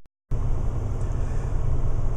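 Steady low rumble of road and engine noise inside a moving car's cabin, cutting in abruptly about a third of a second in.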